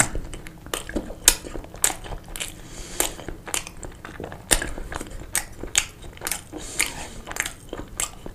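Close-miked eating of a sausage: biting and chewing, with many sharp, wet mouth clicks and smacks at an irregular pace.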